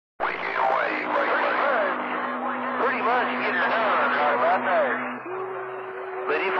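CB radio receiver on channel 28 playing long-distance skip: voices that come through garbled and hard to make out, over a steady low tone that jumps up in pitch about five seconds in.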